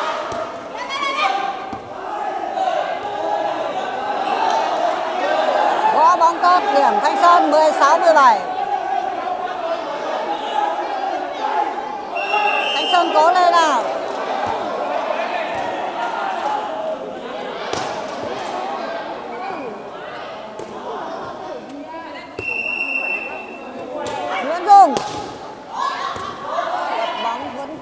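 Air volleyball rally: hands striking the light inflatable ball with sharp slaps and thuds, over the shouting and calls of players and spectators, the loudest hit near the end. A short referee's whistle sounds a few seconds before the end.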